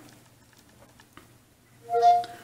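Quiet handling of a phone with a faint tap about a second in, then near the end a short electronic chime of steady tones: Cortana's listening tone from a smartphone speaker as the voice assistant starts listening.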